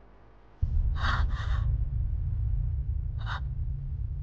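A woman's short, breathy gasps, two in quick succession about a second in and one more near the end, over a low steady rumble that starts just before them.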